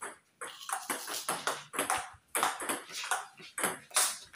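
Table tennis rally: the plastic ball clicking sharply off the paddles and the table in quick succession, about three to four hits a second.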